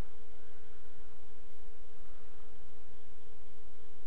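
A steady pure electronic tone held at one pitch over a constant low electrical hum. The tone cuts off suddenly at the end.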